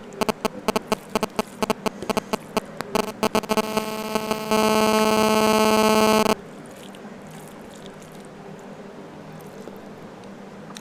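Mobile-phone radio interference picked up by a lapel microphone: a run of sharp clicks that speed up over about three seconds, then a loud steady buzz for nearly two seconds that cuts off suddenly. Afterwards only faint sounds of eating by hand.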